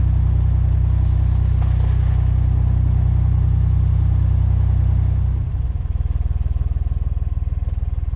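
Narrowboat's diesel engine running steadily under way, a low even thrum. About five seconds in the note drops slightly and turns more pulsing and uneven.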